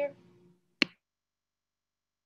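A single short, sharp click just under a second in.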